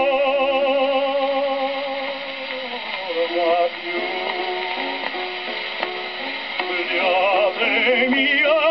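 Early acoustic Fonotipia gramophone record of an operatic tenor singing with wide vibrato over a quieter accompaniment, played through a horn gramophone. A long held note fills about the first three seconds, then shorter, lower phrases follow, and the voice climbs again near the end. The sound stops short of the highest treble, as early acoustic recordings do.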